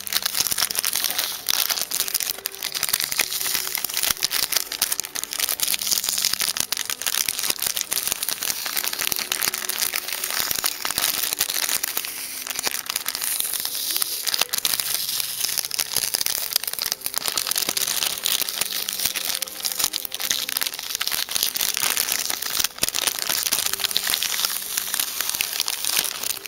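A paper sticker sheet and its backing paper crinkling and rustling as it is handled and peeled close to the microphone, full of small crackles.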